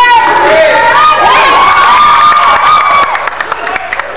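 Basketball crowd in a gym shouting and cheering loudly, many high-pitched voices at once. The cheering dies down about three seconds in, with a few sharp knocks.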